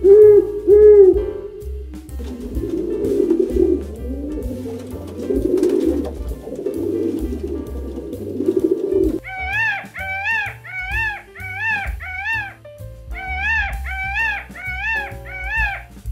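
An owl's low hoots in the first two seconds, then a rock pigeon cooing in a low, steady murmur. From about halfway, a bird gives two runs of short, loud, rising-and-falling calls. Background music with a steady beat plays throughout.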